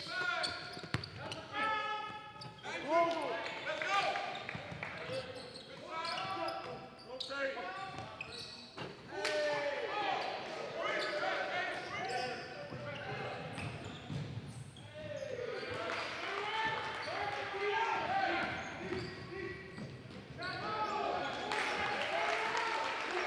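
Live basketball game sound in a gym: a ball bouncing on the hardwood amid players and spectators calling out, with the hall's echo.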